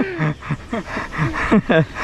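A man laughing: a quick run of short, breathy bursts, about four or five a second.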